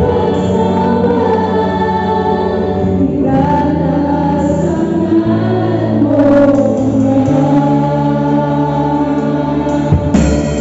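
Live church worship music: several voices sing a slow praise song in Tagalog in long, held notes over a bass guitar. A drum hit comes right at the end.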